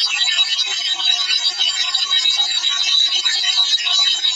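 Steady radio-like static with a thin high whistle running through it and faint snatches of music in it, heard through a small speaker.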